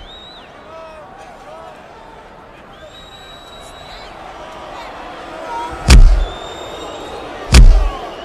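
Two heavy punch-impact sound effects near the end, about one and a half seconds apart, each a short hard thud with a deep boom. Between them only a faint background of voices.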